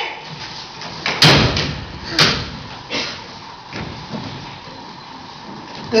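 Knocks and thumps as boxes are handled and set down on a table, the loudest about a second in and a sharper one about a second later, then a few fainter ones.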